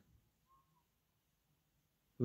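Near silence: room tone in a pause between spoken phrases.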